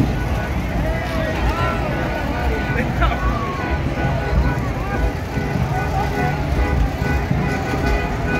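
Parade street sound: the steady low rumble of old cars' engines moving past, mixed with crowd voices and music with long held notes.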